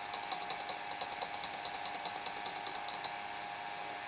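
A quick run of light clicks from a computer mouse being clicked rapidly, stopping about three seconds in, over a steady computer hum.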